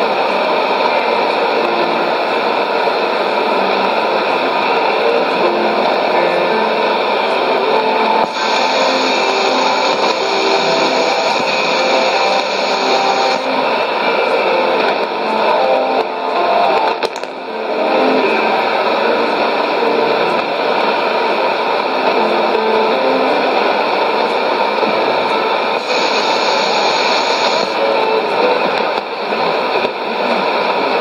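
Shortwave AM broadcast on 11580 kHz coming through the speaker of a Sony ICF-2001D receiver: faint plucked-string music under heavy, steady hiss and static. The signal fades briefly a little past halfway through.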